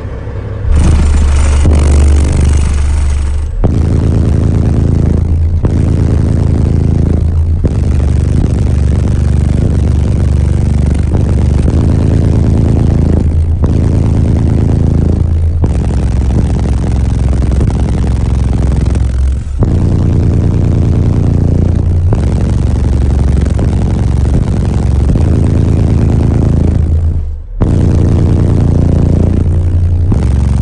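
Tuned Peterbilt semi truck's diesel engine revved hard and repeatedly while standing, very loud inside the cab, with brief lifts off the throttle every two seconds or so.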